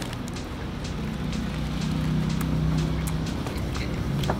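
Low steady motor hum that grows a little louder through the middle and eases off near the end, under faint clicks of chewing.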